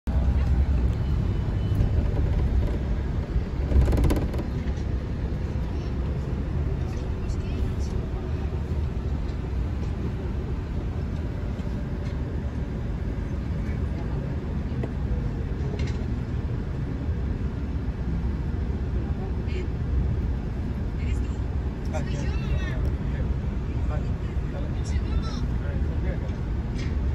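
Inside a bus cabin as it pulls away and drives on: a steady low rumble of engine and road noise, with a single loud thump about four seconds in.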